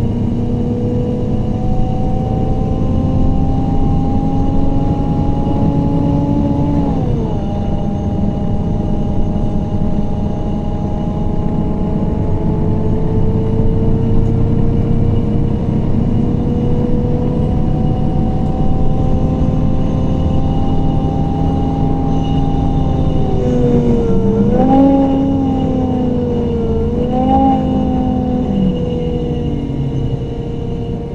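A 2014 MAN Lion's City CNG city bus running under way, heard on board: its natural-gas engine and ZF Ecolife automatic gearbox climb slowly in pitch, drop sharply at a gear change about seven seconds in, then climb again for a long stretch. From about two-thirds through, the pitch dips and wavers and then falls away near the end as the bus slows.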